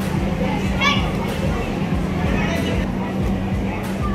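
Children's voices calling out in a large hall during a karate sparring bout, a few short shouts standing out, over a steady low hum.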